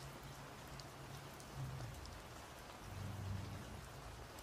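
Steady rain ambience, a soft even hiss with faint scattered drop ticks, under a low rumble that swells briefly about one and a half seconds in and again, more strongly, around three seconds in.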